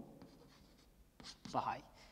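Chalk on a blackboard: a few faint taps and short scratchy strokes as a figure is written and underlined twice. A short spoken syllable comes near the end and is louder than the chalk.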